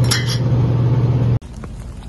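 Glass Starbucks coffee-drink bottles clinking briefly as one is lifted off a shelf in a convenience-store drinks cooler, over a steady low hum from the refrigerated coolers. It cuts off sharply about one and a half seconds in, giving way to a quieter outdoor background.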